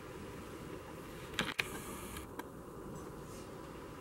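A few faint, sharp clicks over quiet room tone, about one and a half and two and a half seconds in.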